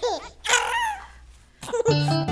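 Two short, high-pitched vocal sounds from a cartoon child's voice, each falling in pitch. Children's-song music starts up near the end.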